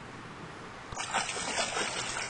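A large carp kicking free on release, its tail splashing the shallow water in a sudden run of irregular splashes that starts about a second in.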